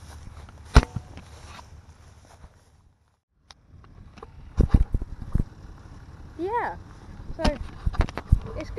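Handheld camera being handled and fumbled, with several loud knocks and thumps on the microphone, following a moment of near silence where the video cuts. A short rising-and-falling vocal sound comes near the end.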